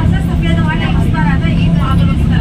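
Steady engine drone and road noise of a moving road vehicle, heard from inside it, with voices talking over it.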